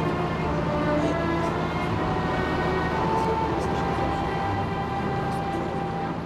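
Orchestral film score with long held notes, over a steady low rumble of boat engines.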